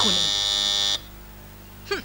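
Electric doorbell buzzer sounding one steady buzz that cuts off suddenly about a second in, signalling someone at the door.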